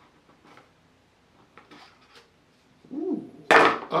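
Faint clicks and light scrapes of a small wallet box being handled and slid open, followed near the end by a man's loud exclamation.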